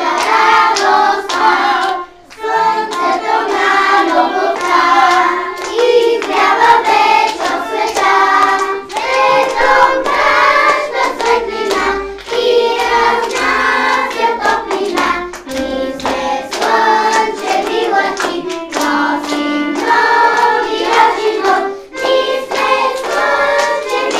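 A group of children singing a song in Bulgarian in unison with violin accompaniment, with a short break about two seconds in.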